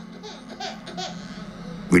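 A baby vocalising faintly in short snatches of babble or giggles.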